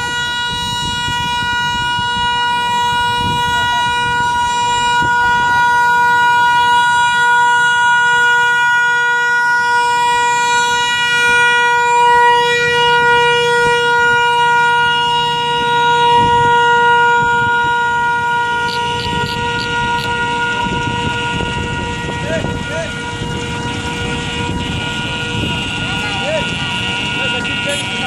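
A procession of vintage scooters riding past, their small engines buzzing louder and closer from about two-thirds of the way in. A steady high-pitched tone with many overtones sounds throughout, over murmured voices.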